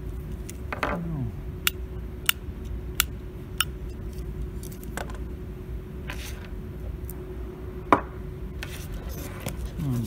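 Sharp, short clicks and taps from handling a reassembled toggle switch and screwdriver on a tabletop: four clicks about two-thirds of a second apart in the first few seconds, a few more scattered, and the loudest single click near the end. A faint steady hum runs underneath.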